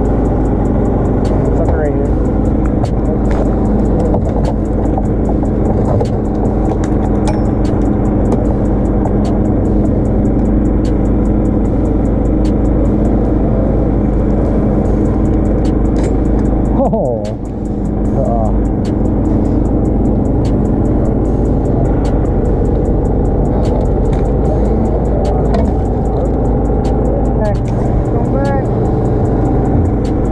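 An engine running steadily on a bowfishing boat, an unchanging drone, with faint voices now and then. The sound dips briefly about seventeen seconds in.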